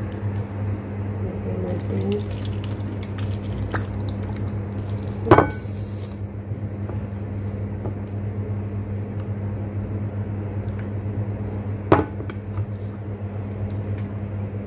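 Two sharp knocks of kitchenware as a plastic funnel and measuring cup are handled while the avocado mixture is poured into ice candy wrappers, one about five seconds in with a brief ring and a short rustle after it, the other near the twelve-second mark. A steady low hum runs underneath.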